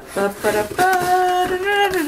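A woman's voice singing one long held note, starting about a second in, after a few short voice sounds.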